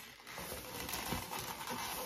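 Latex modelling balloons being twisted and wrapped by hand, giving a run of faint rubbery squeaks and rubs.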